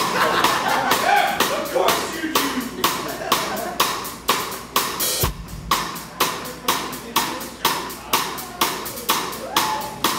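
Rock drum kit played live in a steady beat, with cymbal strokes marking about two accents a second. Voices rise and fall over it during the first couple of seconds.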